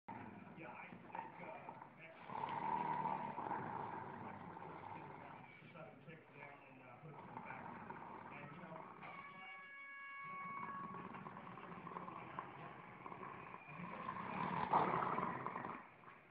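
Dogs growling and grumbling at each other in a squabble over a chew toy, a long rough run of sound, loudest early on and again near the end. About ten seconds in there is a brief high-pitched note.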